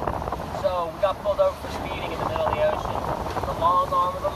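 Wind rushing over the microphone as a continuous low rumble, with a few short stretches of indistinct voices over it.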